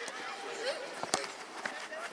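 Faint, scattered voices of players and onlookers around an outdoor football pitch, with a sharp thud of the football being struck about a second in and a softer knock about half a second later.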